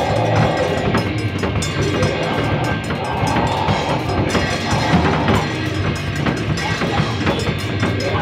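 A live band playing loud, dense music, with a drum kit hitting steadily through a thick, noisy wash of sound.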